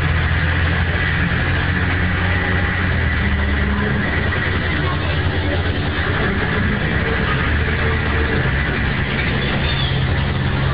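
Mercedes-Benz OHL1316 city bus heard from inside the cabin, its rear-mounted OM 366 inline-six diesel running under way with road and body noise. The engine note shifts in pitch a few times. The sound is loud and harsh, as recorded on an old mobile phone.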